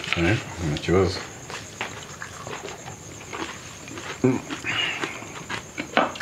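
Short spoken murmurs near the start and again about four seconds in, with light clicks of metal forks on a plate between them.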